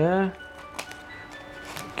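Scissors cutting into a paper tea packet: a couple of short snips, faint under soft background music.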